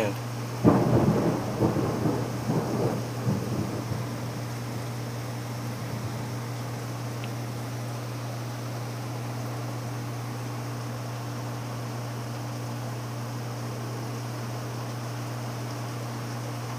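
A thunderclap about a second in, crackling and rumbling for a few seconds before it fades, over heavy rain falling steadily.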